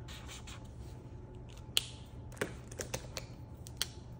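Fine-tip pen scratching softly on journal paper as a letter is written, with several sharp clicks as pens are handled, set down and picked up on the desk.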